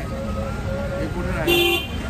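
A car horn toots once, briefly, about one and a half seconds in, over busy street chatter and traffic rumble.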